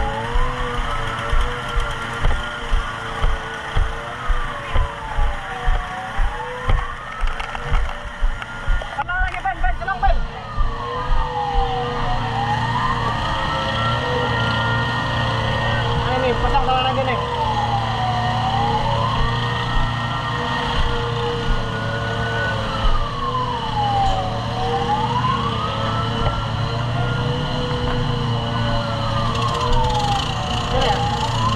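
A wailing emergency siren, slowly rising and falling about once every six seconds, over an engine running steadily. For the first ten seconds regular low thumps come about twice a second; after that the engine hum is louder and steady.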